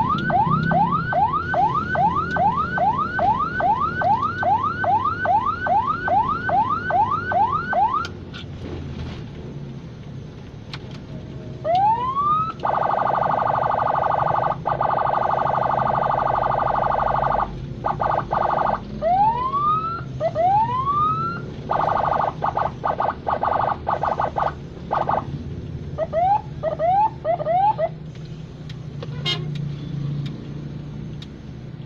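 Ambulance electronic siren in fast yelp, about three or four rising sweeps a second, which stops after about eight seconds. It then comes back as single rising whoops, a harsh steady horn tone held for about five seconds, choppy bursts of horn, and a few short quick yelps near the end, with engine and road noise underneath.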